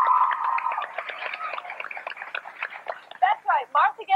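A held musical note fades about a second in, under studio audience clapping that runs about two seconds before a woman's voice takes over.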